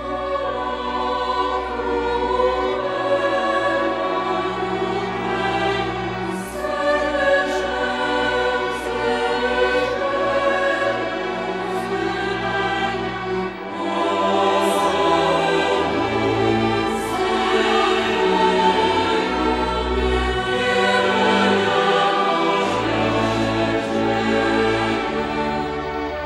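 Mixed choir singing a Polish Christmas carol with a string orchestra, in slow held chords. The music swells fuller and louder about halfway through.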